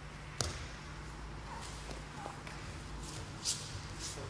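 Bodies moving on tatami mats as a pinned partner gets up: a sharp knock about half a second in, then faint shuffles and a brief rustle of cloth near the end, over a low steady hum.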